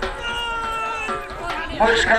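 A man's long drawn-out shout, held for about a second and falling slightly in pitch, followed near the end by a louder voice calling out.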